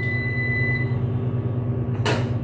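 A commercial laundromat washing machine's control panel giving one long, steady electronic beep as it is started, cutting off about a second in, over a steady low hum.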